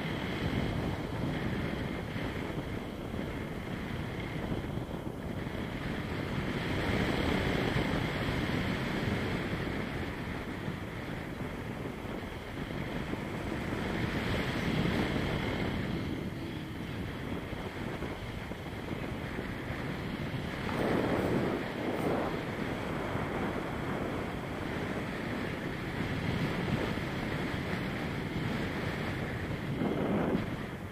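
Rush of wind over the microphone of a camera on a paraglider in flight, the airflow swelling and easing every few seconds, with a brief louder gust about two-thirds of the way through.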